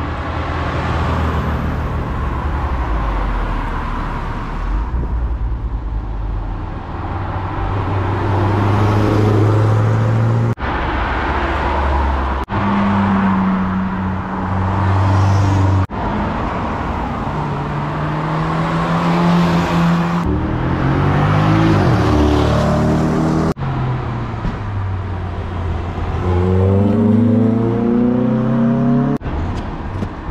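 A string of cars accelerating past on a wet road, with tyre hiss. The engine notes climb and drop back as they change gear, and the sound breaks off and restarts several times.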